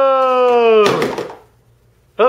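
A voice holding a long, drawn-out "whoa" that slides slightly down in pitch and ends just under a second in, followed by a short sharp noise.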